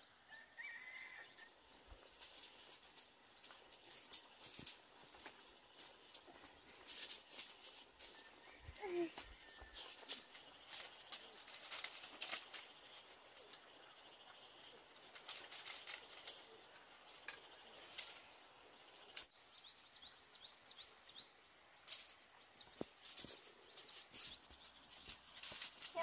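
Dry broom-grass stalks crackling and ticking irregularly as they are handled and bound with string into a hand broom. A short chirp near the start and another brief animal call about nine seconds in.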